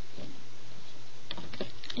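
Small plastic clicks and rattles of a Rainbow Loom hook and rubber bands being worked on the loom, bunched together in the second half, over a steady low hum.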